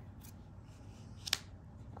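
Trading cards being handled and set down on a tabletop: a faint rustle with a few light ticks, and one sharp click a little over a second in as a foil card is laid down and the next one picked up.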